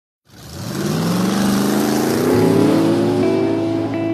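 Motorcycle engine accelerating, its pitch rising steadily for about three seconds over a rush of noise. A held guitar chord comes in near the end.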